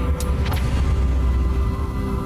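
A loud, deep, steady rumble under background music, with two short swish-like hits in the first second, typical of edited transition effects.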